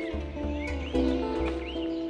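Background music: sustained held notes over a low, steady bass line.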